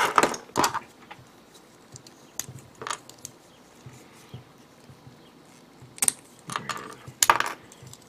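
Small hard-plastic model-kit parts clicking and tapping as they are handled and snapped together: a few scattered sharp clicks with quiet gaps, the busiest run of them near the end.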